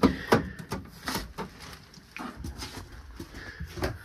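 Hinged plastic cover of an RV power converter and breaker panel being pushed shut: a series of sharp clicks and knocks, loudest at the start. Near the end, a wooden closet door clicks as it is opened.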